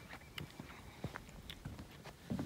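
Faint footsteps on a plank boardwalk: scattered knocks and clicks underfoot, with handling noise.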